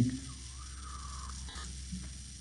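A quiet sip of coffee from a mug, faint against a steady low hum of room noise, with a small click about one and a half seconds in.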